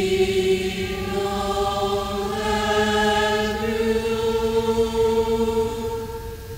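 High school choir singing long sustained chords, the top voice moving up to a higher note about halfway through; the sound eases off near the end.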